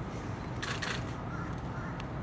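Camera shutter clicking twice in quick succession, under a low, steady outdoor background.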